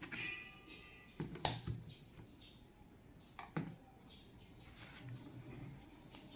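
Plastic clicks and knocks as a USB phone charger is handled and pushed into a power strip socket. The sharpest click comes about a second and a half in, with a smaller one near the middle.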